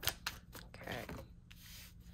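A deck of tarot cards being shuffled by hand: a few short card-on-card rubs and slaps in the first second, then softer.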